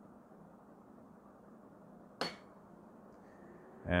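A single sharp click about two seconds in: the power rocker switch of a Shimadzu UV-1700 spectrophotometer being pressed on.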